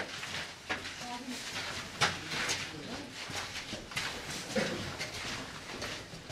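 Footsteps and scuffing of several people walking along the floor of a narrow mine tunnel, with irregular sharp knocks and clicks, the loudest about two seconds in, and faint murmured voices.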